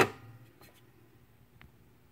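One sharp knock at the start, then a few faint ticks over a low steady hum: handling noise at a record player after the record has finished playing.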